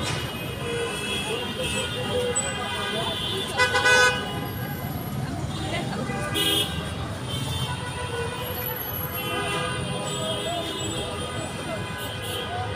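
Busy street traffic with vehicle horns honking, the loudest blast about three and a half seconds in and a shorter one near six and a half seconds, over a steady traffic rumble and the chatter of passers-by.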